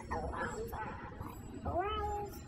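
A woman's voice speaking in an unusually high pitch, ending in a drawn-out syllable that rises.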